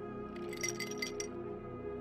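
Soft background music under a pause in the narration: sustained notes, with a few light, high clinking notes in the first half.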